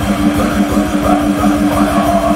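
Death/thrash metal band playing live: distorted electric guitars holding a riff over fast, dense drumming, loud.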